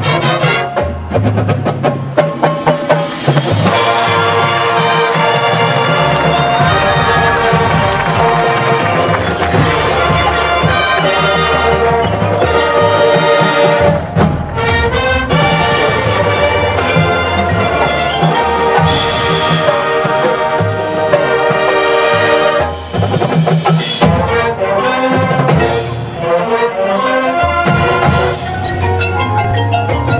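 A high school marching band playing: brass holding full chords over drums and other percussion, with brief dips and accented hits in the last third.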